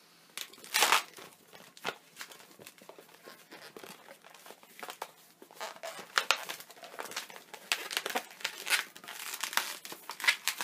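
Inflated latex modelling balloons being twisted and handled: irregular rubbing squeaks and creaks of latex against latex and against the hands, the loudest about a second in.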